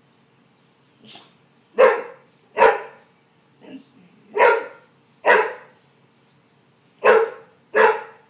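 Boxer dog barking: six loud barks in three pairs, the two barks of each pair under a second apart.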